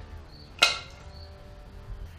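One sharp clank a little over half a second in, with a brief ring after it: a hand tool or engine part knocked or set down while working on the motorcycle's opened clutch side.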